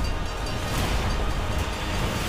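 Film trailer soundtrack: music under a loud, dense rumble of battle and fire sound effects.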